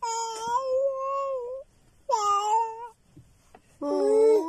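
A toddler vocalizing: two drawn-out, wordless calls held on a steady pitch. The first lasts about a second and a half; the second, about two seconds in, is shorter.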